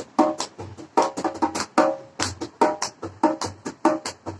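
Dholak played on its own in a brisk rhythm, about four strokes a second, low bass-head thumps alternating with ringing treble-head strokes.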